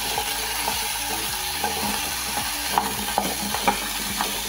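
Potato chunks sizzling steadily in hot oil in a metal pan, with a wooden spoon stirring them and scraping against the pan in short strokes.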